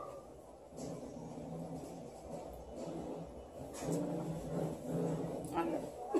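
A low voice softly singing a few bars of a melody, in short held notes.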